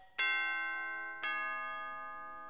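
Two-note ding-dong doorbell chime: a higher note struck just after the start, then a lower note about a second later, each ringing out and slowly fading.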